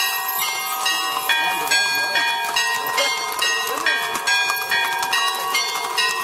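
Church bells ringing in a rapid, irregular peal, about two to three strikes a second, each stroke ringing on beneath the next.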